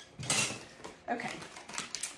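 Thin tin craft crosses handled on a tabletop: a few light metallic clatters and scrapes as they are set down and slid together, with handling noise near the end.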